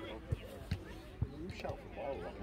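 Distant voices of players and spectators calling across a football pitch, with three dull low thumps in the first part.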